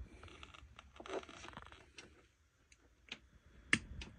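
Faint handling noise of thin wires and small plastic parts worked by hand, as switch leads are bent back and tucked into an R1 ESC's plastic case: soft rustling and scraping, then a few small clicks, the sharpest near the end.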